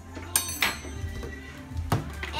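Background music with three sharp knocks and clinks, near the start and just before the end, as kitchen items such as a butter knife and a plastic peanut butter jar are handled on the counter.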